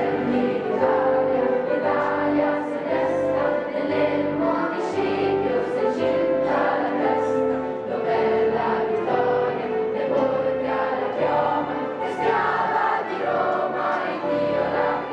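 A choir of teenage students singing together, holding long notes.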